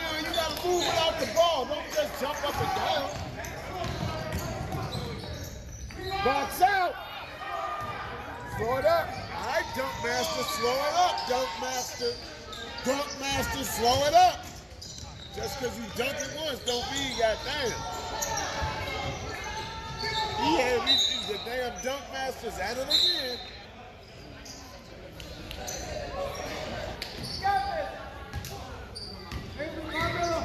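Basketball bouncing on a hardwood gym floor during play, with voices calling out over the game.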